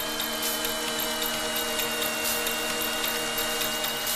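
Early-1990s Italian progressive dance track in a breakdown with no kick drum or bass: sustained synth chords and a slowly falling high tone over fast ticking hi-hats, with a short hiss swell about every two seconds.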